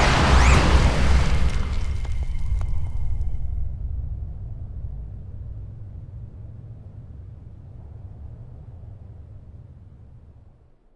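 A loud explosion-like blast that dies away into a long, low rumble, fading steadily through the rest of the clip.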